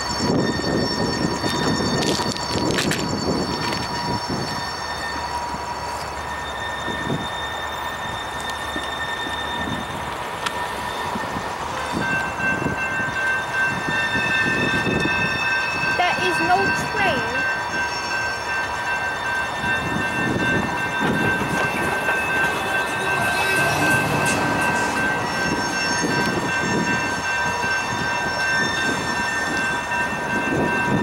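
Freight train of covered hopper cars rolling slowly through a sharp curve, with a continuous rumble of wheels on rail and scattered clacks. Over it rise several steady, high-pitched wheel-flange squeals that come and go, louder from about twelve seconds in.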